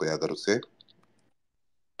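Brief speech in the first moments, then a few faint clicks about a second in, then dead silence.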